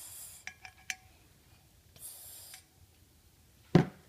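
Small metal toy tea-set pieces being handled: a few light clinks with a brief ring, two short hisses, and a sharp knock just before the end.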